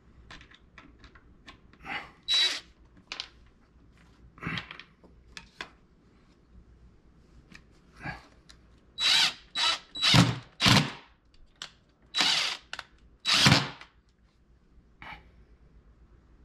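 A DeWalt cordless drill driving screws into a wooden base in a series of short bursts, each under a second. The runs are loudest and come closest together in the second half.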